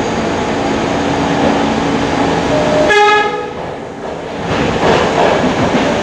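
New York City subway B train of R68-series cars pulling out of a station, a steady rumble of motors and wheels. About halfway through a brief two-note signal sounds, a higher note then a lower one, and after it the running noise grows louder as the train gathers speed.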